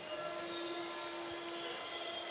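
Steady background noise with a faint held tone that starts just after the beginning and stops near the end.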